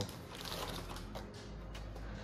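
Clear plastic zip-lock bag and cardboard shipping box rustling and crinkling as the bag is pulled out of the box, with scattered small clicks and crackles.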